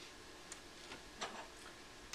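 A few faint, irregularly spaced clicks from a small handheld instrument being handled, as the PulStar handpiece is taken up and readied for its flexible tip.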